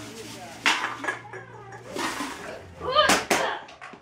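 Crushed aluminum cans clattering together and a plastic bag rustling as the cans are handled and bagged. There is a sharp clatter about a second in and more near the end, along with a brief voice.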